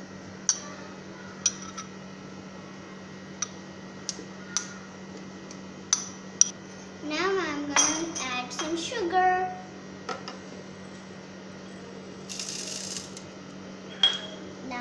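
A metal spoon clinking against a plate and a plastic blender jar as chopped mango is spooned into the jar. Several sharp, separate clinks come in the first half.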